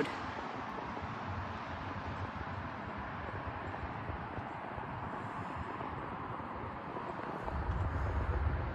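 Steady traffic noise from a busy road, an even hiss of passing vehicles, with a low rumble coming in near the end.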